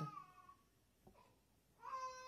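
Near silence in a pause between sentences, with one faint tick about a second in and a faint steady high tone that returns near the end.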